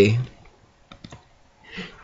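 A few faint, short clicks about a second in, during a pause between words, with a faint breath just before talking resumes.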